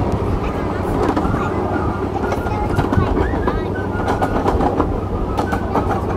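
Ride-on miniature train running along its track: a steady rumble with scattered sharp clicks from the wheels and rails.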